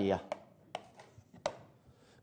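Chalk tapping against a chalkboard while writing: a sparse string of short, sharp clicks, about six of them.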